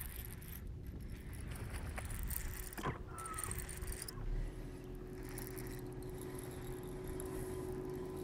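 Wind and water noise on a bass boat's front casting deck. A short whoosh comes about three seconds in as the rod is swept back on a hookset. From then on a steady low hum runs, from the bow-mounted electric trolling motor.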